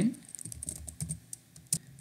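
Computer keyboard typing: a quick run of key clicks, with one louder keystroke near the end.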